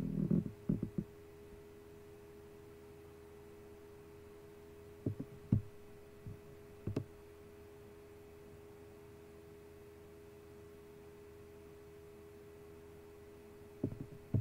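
Steady electrical hum with a few pitched tones, with a few short clicks about five and seven seconds in.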